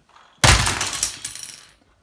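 A large Lego passenger airplane smashed down onto the floor: one sudden crash about half a second in, then plastic bricks clattering and settling, fading over about a second and a half.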